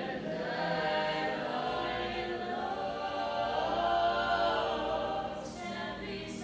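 Mixed-voice a cappella ensemble singing sustained, slowly moving chords, the sound carried and enhanced by the reverberant dome overhead. A brief sung 's' cuts through near the end.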